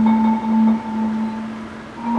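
Marimba holding a single low rolled note that slowly fades at the end of a musical phrase.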